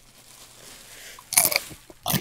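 A quiet stretch, then a crunchy bite close to the microphone about one and a half seconds in, followed by a little softer chewing.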